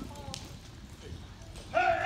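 Hooves of cattle and horses moving on soft arena dirt. Near the end a loud, drawn-out, steady-pitched call starts.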